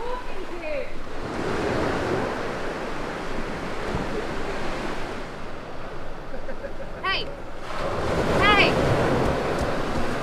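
Surf washing onto a sandy beach: a steady rush of waves with no break.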